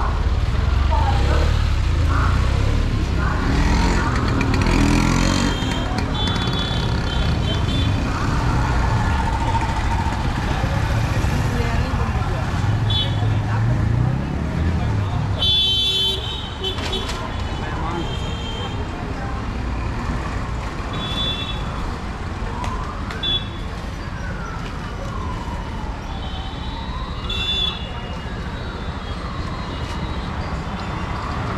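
Busy market street ambience: crowd chatter, the hum of rickshaw and scooter traffic, and short vehicle horn toots every few seconds. In the last third a slow wail rises and falls twice, like a distant siren.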